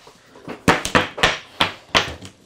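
Gavel rapping on wood: about six sharp knocks in quick, uneven succession, each with a short ring.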